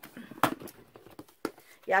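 Plastic storage box handled and opened, with two sharp clicks about a second apart.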